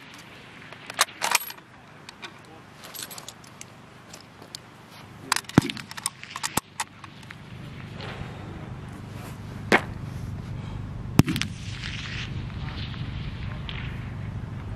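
Mauser K98k bolt-action rifle (converted to 7.62x51mm) being reloaded between shots: scattered sharp metallic clicks and clacks as the bolt is worked and a round chambered, the two loudest near the end. A low rumble builds up in the second half.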